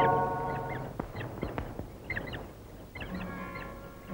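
Birds chirping: quick, high, repeated chirps. A held music chord fades out under them in the first second, and soft sustained music notes come back about three seconds in.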